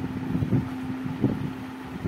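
Low rumbling room noise picked up by the speaker's microphone in a pause between spoken phrases, with a faint steady hum that stops shortly before the end.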